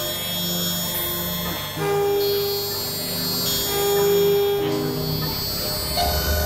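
Synthesizer playing experimental electronic music: sustained, overlapping tones that shift pitch every second or so, over a layer of steady high tones. A held mid-pitched note swells to the loudest point about four seconds in.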